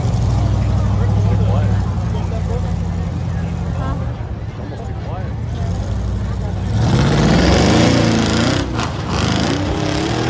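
Monster truck engine running steadily as the truck drives across the dirt field, then revving hard about seven seconds in, rising in pitch and at its loudest around eight seconds.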